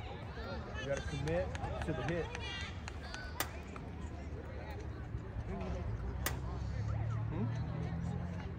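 Distant, indistinct voices of players and spectators calling across an open field over a steady low rumble, with two sharp clicks, one about three and a half seconds in and another about six seconds in.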